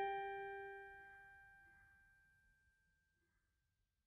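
The last chord of a soft instrumental lullaby rings out in bell-like tones and fades away to silence within about three seconds.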